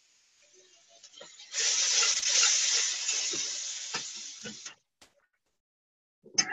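Epis (green seasoning paste) sizzling in hot oil with sautéed onions and garlic in a square copper-coloured pan as a spoon stirs it, with a few knocks of the spoon on the pan. The sizzle starts about a second and a half in and cuts off suddenly about three seconds later.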